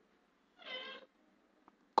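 A cat's single short meow, about half a second long, a little after the start.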